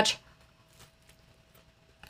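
The last syllable of a woman's speech, then near silence with a few faint soft clicks of chewing as she eats a bite of apple fritter.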